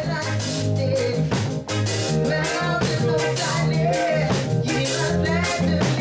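Small band playing live in a reggae style: a steady drum kit beat under a bass line, with electric guitar, synth keyboard and a singing voice.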